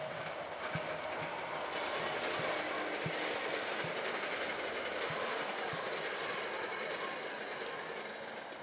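A steady rushing noise that swells slightly in the middle, with a few scattered dull low thuds.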